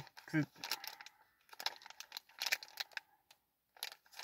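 Plastic chocolate-bar wrapper crinkling in short, irregular rustles as it is handled and turned over in the hands.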